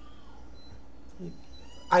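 Faint, brief high-pitched calls from a pet over a low room hum.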